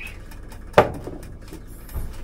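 A single sharp knock of a small container being set down on the stovetop, with a brief ring after it, and a fainter knock near the end.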